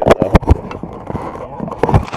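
A quick run of sharp knocks and bumps close to the microphone, loudest in the first half-second and again near the end, as a paddler climbs out of the beached canoe and a hand reaches for the camera.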